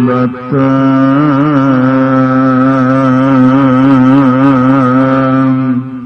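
A man chanting a line of Gurbani in a sung recitation, drawing out one long held note with a wavering vibrato from about half a second in until it fades away near the end.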